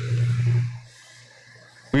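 A short pause between spoken prayers: a steady low hum and the fading tail of the previous words during the first moments, then quiet room tone until a man's voice begins again at the very end.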